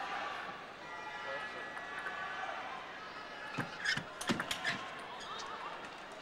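A quick table tennis exchange: four or five sharp clicks of the celluloid ball off bats and table about three and a half seconds in, over the steady hubbub of an arena crowd, followed by a short wavering call.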